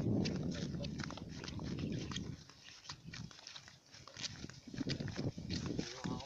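Footsteps crunching through dry grass, a rapid scatter of sharp crackles, under a low rumble of wind buffeting the microphone. The rumble is strongest for the first two seconds and returns about five seconds in.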